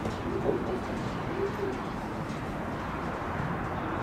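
Steady wind noise on the microphone, with a few low cooing calls in the first second and a half.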